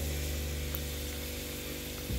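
Samosa deep-frying in oil in a kadai on low heat: a steady sizzle with a low, even hum underneath.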